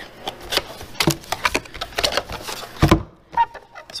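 A cardboard product box being opened by hand: a run of irregular clicks and scrapes as the flap is worked loose, with one louder thump about three seconds in.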